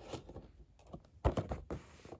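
A few short knocks and scrapes of a cardboard model-plane box being handled and set down on carpet, the loudest about 1.3 seconds in.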